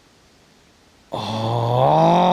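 A man's long, drawn-out vocal 'ohhh', starting about a second in and rising slightly in pitch, a golfer's wordless reaction while a putt rolls toward the hole.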